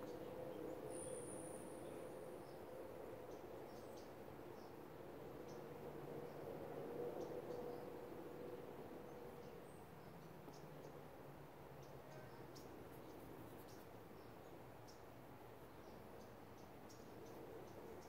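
Faint background: a steady low hum with scattered soft ticks, and a brief high-pitched tone about a second in.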